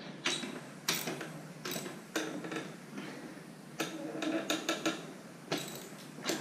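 Wrench tightening the rear axle nut of a BMX bike: a string of irregular metallic clicks, some coming in quick runs.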